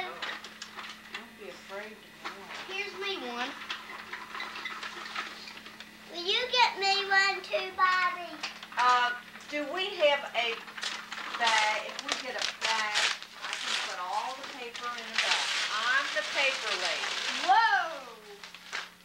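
Young children's voices chattering and calling out, too indistinct to make out words, with scattered clicks and knocks, a stretch of rustling about fifteen seconds in, and a steady low hum underneath.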